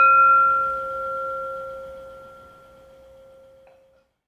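Metal singing bowl struck once with a wooden striker, ringing with a steady low tone and higher overtones that slowly fade, the highest dying away first. The ring is cut short near the end.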